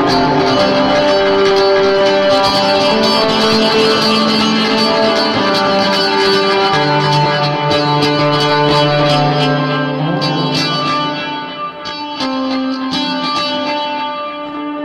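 Two guitars playing together as raw, unmixed tracks, panned fully left and right, holding long sustained notes. The playing gets somewhat quieter after about ten seconds.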